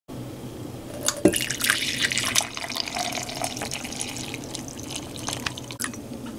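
Coffee poured from a glass carafe into a ceramic mug: a knock, then a steady stream starting about a second in that thins after a couple of seconds into trickles and drips.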